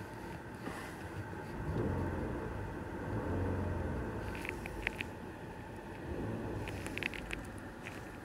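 Car engine idling and revved twice from idle, each rev rising to around 2,000 rpm and dropping back. A few sharp clicks come near the middle and near the end.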